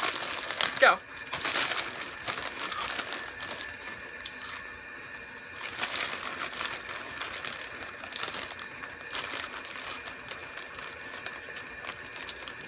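Crinkling and rustling of plastic Flamin' Hot Cheetos chip bags as hands dig into them for chips. A short voice sound rises about a second in.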